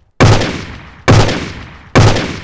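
Dramatised gunshots: three loud shots about a second apart, each with a long fading tail, part of a run of four.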